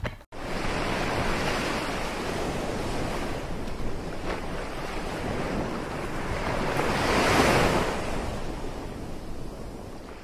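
Sea waves washing, a steady rush that swells about seven seconds in and eases off toward the end.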